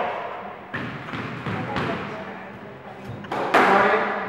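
Squash rally: a rubber squash ball knocked by rackets and hitting the court walls, several sharp knocks a fraction of a second to a second apart, with the loudest late on.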